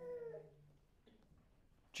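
Near silence in a room, with one faint, short pitched hum lasting about half a second at the start.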